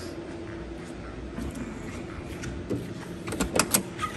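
Door of a 1970 Ford Mustang Mach 1 being unlatched and swung open: a few sharp clicks and knocks in the last second.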